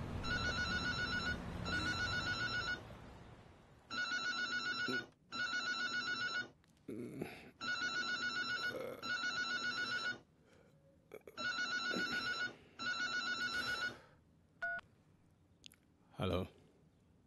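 Telephone ringing with a trilling double ring: four pairs of rings, each about a second long, with short pauses between the pairs. Bedding rustles between some of the rings, and the ringing stops a little before the end.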